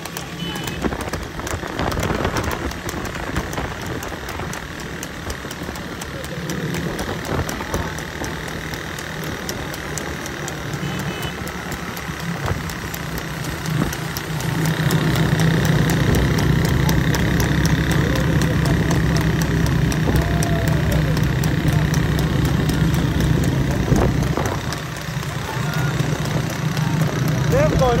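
Several motorcycle engines running at riding pace in a close group, with voices shouting over them; the engine noise grows louder about halfway through.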